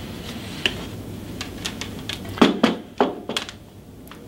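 Handling of a refrigerant analyzer's hard plastic case: light clicks as the sample hose fitting is worked onto its rear port, then a quick run of about four thunks as the unit is set down on a table.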